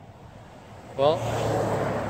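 A car driving past on the highway, its tyre and engine noise swelling about a second in.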